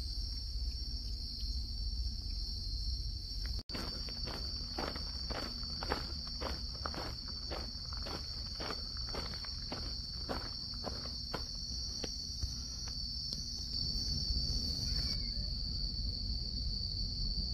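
A steady, high-pitched chorus of insects chirring throughout. After a brief break in the audio about four seconds in, regular footsteps at about three steps a second go on for some eight seconds.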